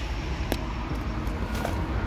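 Steady outdoor background noise, a low rumble with a hiss over it, and one faint click about half a second in.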